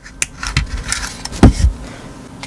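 Handling noise of a plastic ultrasonic dog anti-bark unit and its wires: small clicks and scrapes, then one heavier thump about one and a half seconds in.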